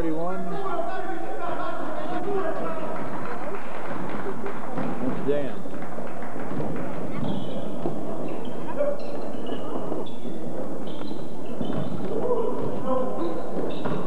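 Indistinct chatter from players and spectators echoing in a gymnasium during a basketball game. From about halfway on come short, high squeaks, typical of sneakers on a hardwood court.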